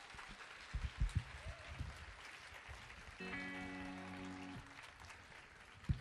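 Audience applause after a song ends, with a few low thumps about a second in and a single held musical note, steady in pitch, from about three seconds in for over a second.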